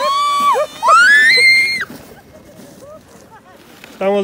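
A person on a sled squealing twice while sliding down a snowy slope: two high-pitched shrieks, the second rising higher and held for nearly a second.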